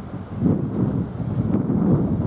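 Wind buffeting the camera microphone in gusts, a low rumbling noise.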